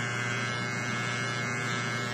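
Electric hair clippers running with a steady, even buzz while shaving a nearly bald head.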